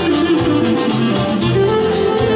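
Live Greek folk-style band music through PA speakers: a clarinet melody over acoustic guitar and keyboard, with a steady bass and rhythm beat.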